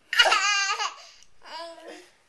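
Toddler laughing in a high voice: one long laugh, then a shorter one about a second and a half in.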